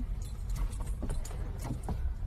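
Low steady rumble inside a car cabin, with a few light clicks and jingling rattles from something being handled near the centre console.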